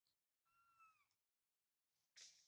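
A faint, single high-pitched call from a baby macaque, about two-thirds of a second long, holding its pitch and then dropping at the end.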